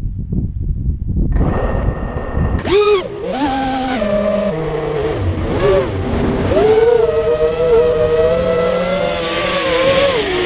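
Wind buffeting the microphone, then the FPV racing quad's four ZMX Fusion 2205-2300kv brushless motors and props start spinning about a second in. A throttle punch near the third second sends the whine steeply up in pitch, and after that it rises and falls with the throttle as the quad flies, heard from the camera on its frame.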